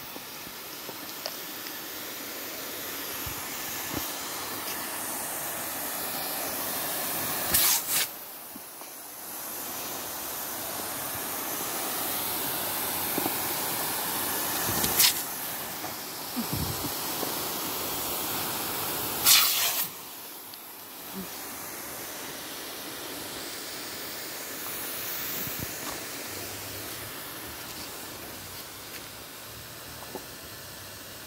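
A pop-up lawn sprinkler's water jet hissing steadily. The hiss grows louder over several seconds and then drops away, more than once, with three short, louder rushes of spray about eight, fifteen and nineteen seconds in.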